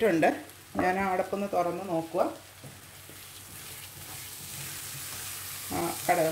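A voice speaks briefly, then chana dal and coconut paste sizzle in a frying pan with a steady hiss that slowly grows louder over about three seconds.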